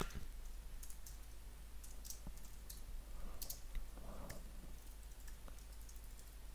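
Faint computer keyboard typing: scattered, irregular key clicks.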